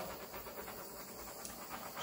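Small handheld torch hissing steadily as its flame is passed over wet acrylic paint to pop air bubbles.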